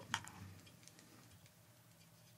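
A near-silent pause in the conversation: faint room tone, with a soft click just after the start.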